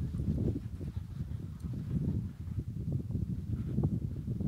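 Paws of a borzoi and Italian greyhounds thudding on sand as the dogs gallop and play close by, a dense, irregular run of low thuds.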